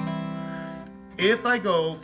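Acoustic guitar ringing and fading away over about a second, then cut short by a man's voice.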